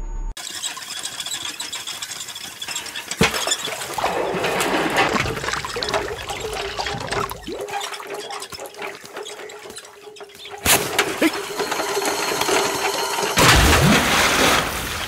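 Water sloshing in a well as a metal pot on a rope is worked in it, with a steady squeak from the well's pulley. A loud splash comes near the end.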